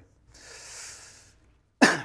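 A man's soft breath drawn in, then a single sharp, loud cough near the end.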